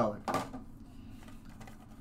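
Faint handling of a baseball card pack and its cards by hand: a short rustle about a third of a second in, then soft scattered clicks and rubbing.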